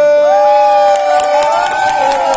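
Concert audience cheering and whooping at the end of a song, with scattered claps, over one long held final note.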